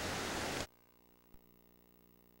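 Steady recording hiss that cuts off abruptly about two-thirds of a second in, leaving near silence broken by one faint click.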